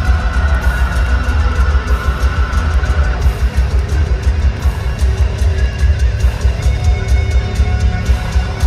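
Heavy metal band playing live and loud in an arena: distorted electric guitars over rapid, dense drumming, heard from the crowd. A high note is held through the first three seconds.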